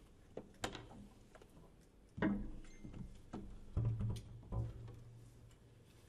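Quiet, sparse jazz from a drumless trio: plucked double bass notes with a few piano notes, each note standing alone with gaps between them, the loudest about two seconds in and around four seconds.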